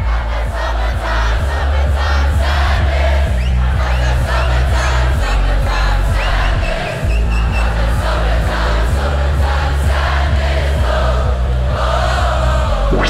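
Electronic dance music with a heavy sustained bass under a large crowd cheering and shouting along. The bass cuts out briefly about seven seconds in, then comes back.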